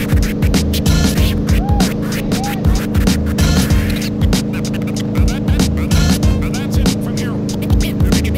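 A tow boat's engine droning steadily at a constant pulling speed, with irregular low thumps of wind buffeting the microphone.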